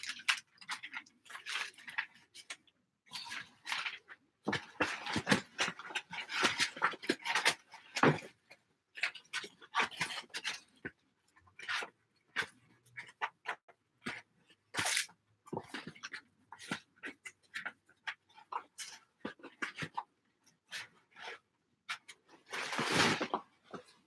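Paper rustling, with scattered small clicks and knocks as art materials are handled, and a longer, louder rustle near the end.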